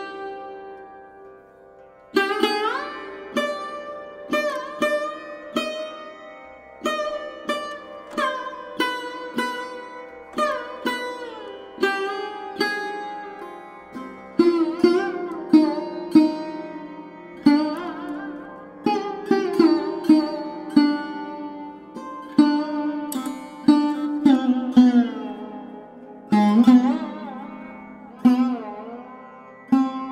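Background music on a solo plucked string instrument: single plucked notes that ring and die away, many bent in pitch, beginning about two seconds in and growing louder in the second half.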